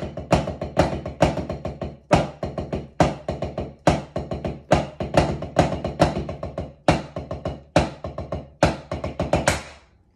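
Wooden drumsticks on a rubber drum practice pad playing flam accents: a steady run of triplet strokes, each group opening with a louder flam, a little over two accents a second with softer taps between. The playing stops just before the end.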